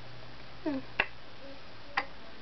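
A short hummed "hmm", then two sharp clicks about a second apart, the first the loudest sound.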